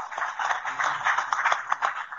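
Audience applauding: dense, steady clapping.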